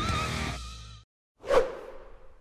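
Electric-guitar intro music ending on a held, wavering lead note that fades out within the first second. After a brief silence, a single whoosh transition effect about a second and a half in, with a short ringing tail.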